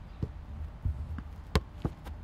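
A football being kicked and bouncing on grass: a few dull thuds, then a sharp loud knock of a kick about one and a half seconds in and a smaller one just after.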